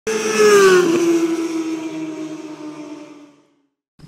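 A fast vehicle passing by: a single engine note drops in pitch just under a second in, then fades away over about three seconds.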